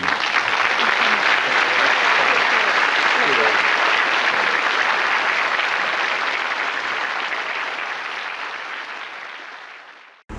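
Studio audience applauding, the applause dying away steadily over the last few seconds.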